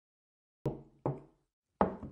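Three short knocks of a laptop being shut and set down on a table, the last one the loudest.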